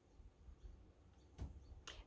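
Near silence: room tone with a faint low rumble, broken by two short faint clicks about one and a half seconds in and just before the end.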